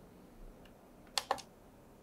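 Two quick sharp clicks, a split second apart, about a second in: clicking at the circuit board as a sync mark for lining up the audio with video recorded on the microscope.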